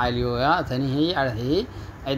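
Only speech: a man lecturing in Afar, with a short pause near the end.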